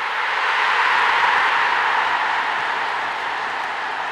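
A steady rushing noise swells over the first second and then slowly eases off.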